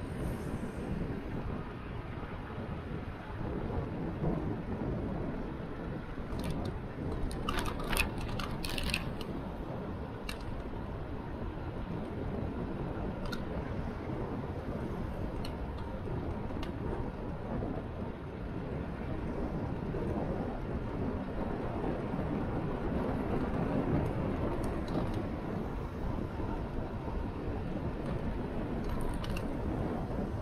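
Wind rumbling on the microphone of a camera moving along a city road, a steady low noise with a few sharp clicks and rattles about seven to nine seconds in.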